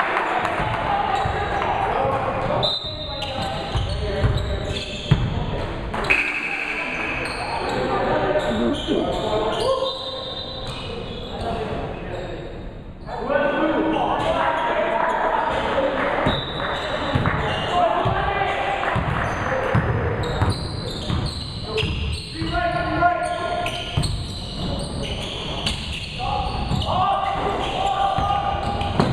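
Basketball being dribbled and bounced on a gymnasium's hardwood court, with players and onlookers calling out throughout.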